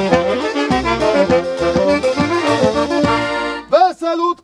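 Wedding band music led by an accordion, a lively folk tune over a steady bass beat, stopping about three and a half seconds in. A man's voice comes in right at the end.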